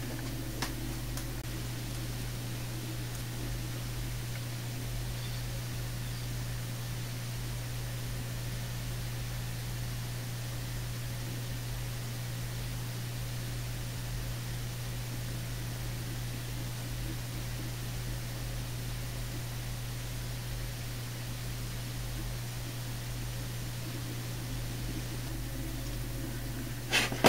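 Steady low hum under an even hiss, with no change throughout: a Dell OptiPlex 390 desktop computer running, its cooling fan and hard drive turning.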